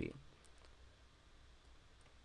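A couple of faint computer mouse clicks about half a second in, over a low steady hum, with the tail end of a spoken word at the very start.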